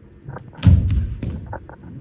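A person's body dropping onto a stage floor: one heavy thud about two-thirds of a second in, followed by a few lighter knocks.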